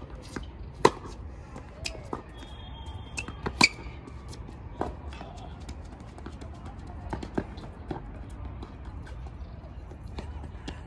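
Tennis rally on a clay court: a run of sharp racket-on-ball strikes and ball bounces. The two loudest come about a second in and a little before four seconds.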